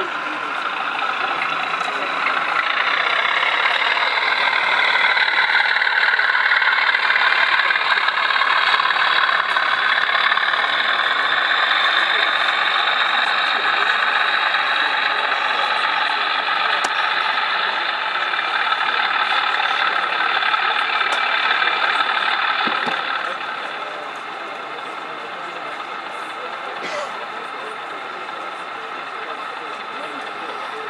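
Sound-fitted model Class 37 diesel locomotive playing its engine sound through a small on-board speaker. The engine note rises a couple of seconds in, runs steadily, then drops back to a lower idle a little after twenty seconds.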